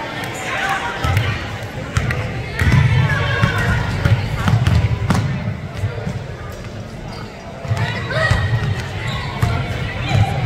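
A basketball bouncing on a hardwood gym floor, with players' running footsteps and voices calling out on the court.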